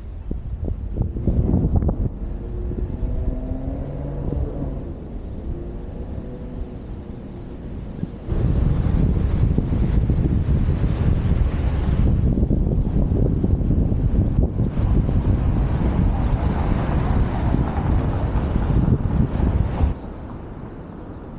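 Wind rumbling on the microphone of a helmet-mounted camera while cycling along a city street, with light traffic noise. About eight seconds in the rumble suddenly gets much louder and stays that way.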